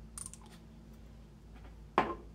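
A few light clicks and taps of small plastic dropper bottles being handled on a desk, then one sharp knock near the end.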